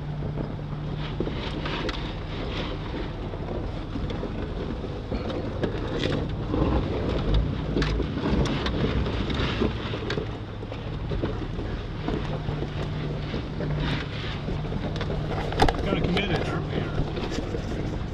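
A 4x4's engine running at low speed, heard from inside the cab, with scattered knocks and rattles from the body and suspension as it crawls over a rough, rocky trail.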